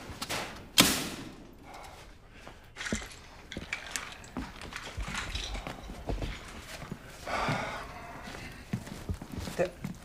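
A sharp thud about a second in, followed by light scattered knocks and footfalls, with a brief muffled voice near the end.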